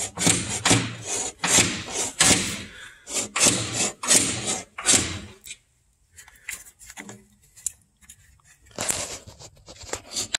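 A steel cable being pushed through a metal tube on a combine frame, scraping and rubbing in short strokes about two a second, then going quieter with one more scrape near the end.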